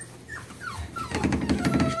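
Five-week-old bully puppies whimpering: short, high whines that slide down in pitch, then a longer drawn-out whine in the last second. Scratchy rustling comes from the wood-shavings bedding as they move.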